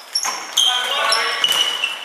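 Players' shoes squeaking in short, high squeals on a wooden sports-hall floor as they run and turn, in an echoing hall.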